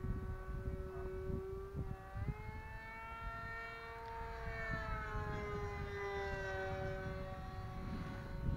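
Electric motor and propeller of an E-flite Scimitar RC plane whining in flight. The pitch rises about two seconds in, then falls slowly over the next few seconds as the plane passes. Wind gusts buffet the microphone underneath.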